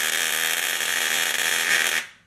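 High-voltage electric arc jumping the gap between two nail electrodes on top of a coil: a loud, steady buzzing crackle that starts suddenly and cuts off at the end.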